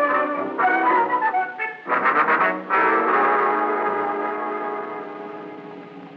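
Orchestral bridge music from a radio drama, with a prominent brass sound: a short phrase of separate notes, a quick flurry about two seconds in, then a held chord that slowly fades away, marking a change of scene.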